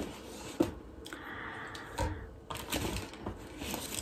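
Handling noise of skincare bottles and packaging: several light clicks and knocks, with a brief rustle in the middle.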